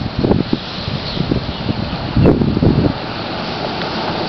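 Wind gusting on the microphone in irregular surges over a steady rush of road traffic.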